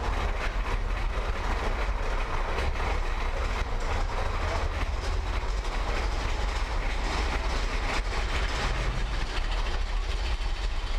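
Big Thunder Mountain Railroad's mine-train roller coaster running along its track: a steady low rumble of the wheels with continual rattling and clacking of the cars.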